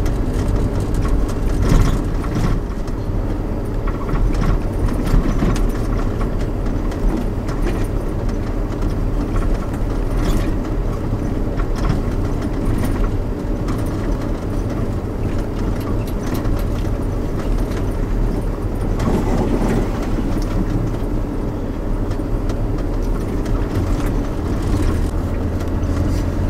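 Four-wheel drive's engine and tyres on a rough dirt track, heard from inside the cabin: a steady low drone with scattered knocks and rattles as the vehicle bumps along.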